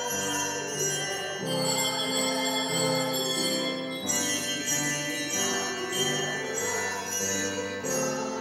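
Handbell choir ringing a piece: overlapping bell tones sounding together in chords, each chord ringing on and changing about every second.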